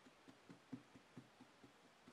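Near silence, with faint soft taps repeating fairly evenly, about four or five a second.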